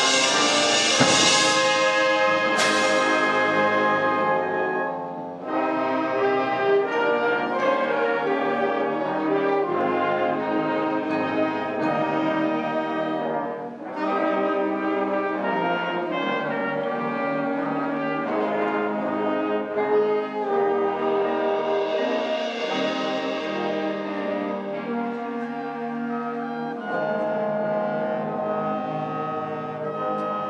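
High school concert band playing, brass to the fore. It starts loud with a sharp crash nearly three seconds in, drops back about five seconds in, and swells again with a rising high wash a little past the middle.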